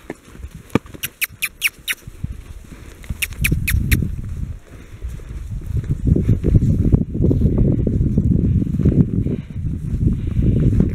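Horses moving about a hay-strewn pen: scattered sharp clicks in the first few seconds, then from about three and a half seconds in a louder, continuous low rumble of hoof thuds and scuffing on the ground.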